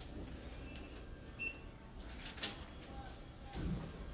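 Quiet post office counter room tone with a short, high electronic beep about a second and a half in, and a sharp click about a second later.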